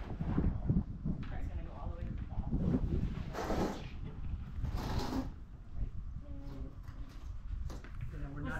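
Indistinct voices over wind rumbling on the microphone, with two short hissing noises about three and a half and five seconds in.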